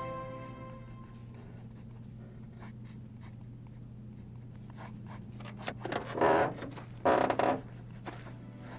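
Pen scratching on paper in short, scattered strokes over a low steady hum, with two louder, longer strokes about six and seven seconds in. A music chord fades out in the first second.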